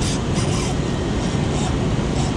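Steady rushing roar of water pouring through a dam spillway, even and unbroken, with a few faint scratchy handling sounds from the rod and reel.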